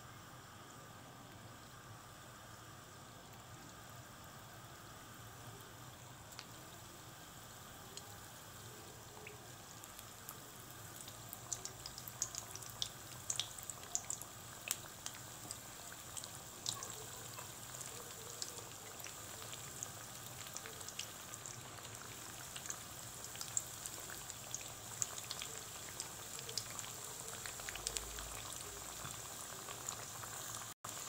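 Dough fingers (sawabe' Zeinab) deep-frying in hot oil: a soft, steady sizzle, with sharp crackles and pops setting in about eleven seconds in and going on to the end.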